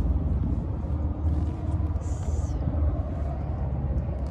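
Steady low rumble of a motor vehicle engine running nearby, with a brief hiss about two seconds in.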